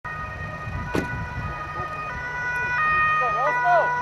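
Dutch ambulance's two-tone siren, switching between a high and a low tone about every three-quarters of a second and growing louder as the ambulance approaches, over a low vehicle rumble.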